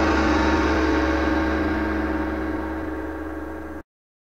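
A gong-like metallic logo sting ringing out with many sustained tones over a low rumble, fading slowly and then cut off abruptly near the end.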